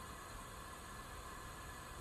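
Faint, steady hiss with a low rumble underneath, unchanging throughout: background noise on a launch webcast's audio feed.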